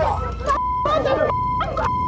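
Women shouting over each other in a scuffle, with a censor bleep, a steady single beep tone, cutting in three times over their swear words.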